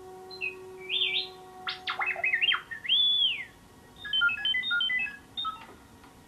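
R2-D2 droid beeping and whistling: a string of electronic chirps and pitch glides, one long rising-and-falling whistle about halfway through, then a quick run of stepped beeps near the end. Held music notes fade out under it in the first half.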